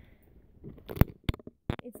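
Handling noise from a phone being turned in the hand: a few sharp clicks and light rubbing, the loudest click about a second in.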